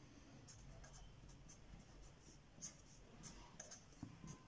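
Faint scratching of a pen writing on paper, in short separate strokes as figures are written and crossed out.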